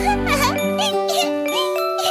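Light children's background music with tinkling, bell-like notes. In the first second or so a high, squeaky warbling sound, like a sped-up cartoon voice, plays over it.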